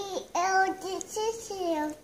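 A toddler girl's high voice in drawn-out, sing-song syllables without clear words, the last one gliding down in pitch near the end.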